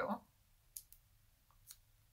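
A few faint, sharp clicks of fingers handling small foam adhesive dimensionals on a paper label, spread across about a second in the middle.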